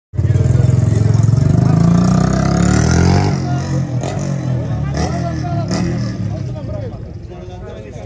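A motor vehicle engine running close by, loud for the first three seconds and rising in pitch as it revs near the three-second mark, then fading away under people talking. A few sharp clicks come between four and six seconds in.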